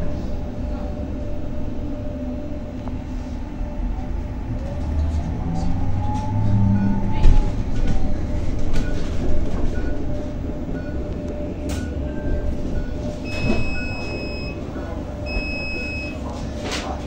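Inside a 2023 Zhongtong N12 battery-electric city bus on the move: steady road rumble, with the electric traction motor's whine rising and then falling in pitch about five to eight seconds in. Near the end a faint regular ticking and two short high beeps sound.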